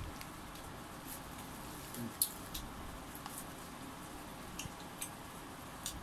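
Scattered soft clicks and squishes of roast chicken being pulled apart by hand over a plastic bag and eaten, over a faint steady hiss.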